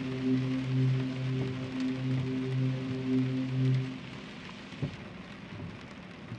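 Steady rain hiss under a held low musical note that stops about four seconds in, leaving only the rain. There is a single soft thump about five seconds in.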